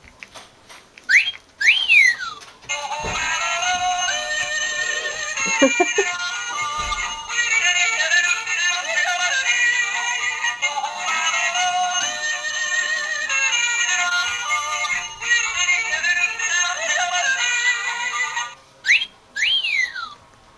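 Yodelling plush cow toy playing its yodelling song, which runs for about fifteen seconds and stops near the end. Short high whistle-like glides, rising then falling, come just before the song starts and again after it stops.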